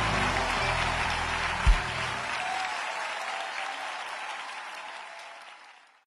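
Concert audience applauding over the band's final held chord. The chord ends about two seconds in with a single low thump, the loudest moment, and the applause then fades away.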